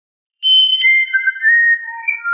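A short intro jingle of high, pure, whistle-like tones. It starts about half a second in and steps downward over a few overlapping notes.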